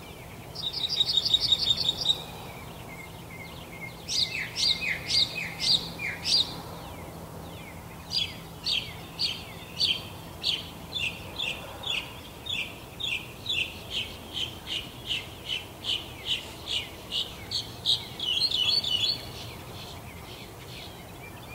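Songbirds singing: a quick high trill near the start, a run of downward-sweeping notes a few seconds in, then a long series of evenly repeated notes, about two and a half a second, ending in a fast chatter.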